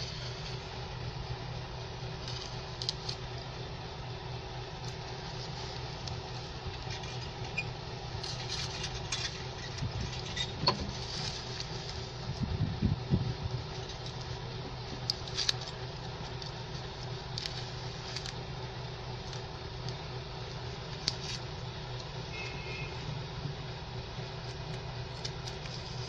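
A knife blade scraping and clicking against the inside wall of a plastic plant pot and grating through packed potting soil as it is worked around to loosen the root ball, in scattered strokes with a busier patch about halfway through. A steady low hum runs underneath.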